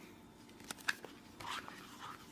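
Paper pages of a large picture book being turned by hand: a couple of faint ticks followed by a soft papery swish.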